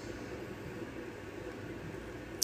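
Steady faint background hiss with a low hum: room tone.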